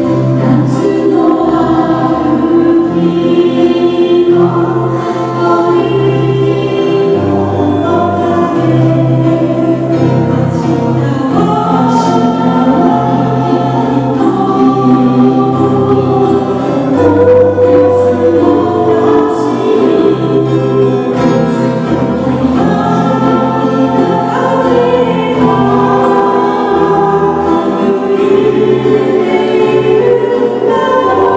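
A small acoustic band playing a song live: sung vocals over ukulele, guitars and bass guitar.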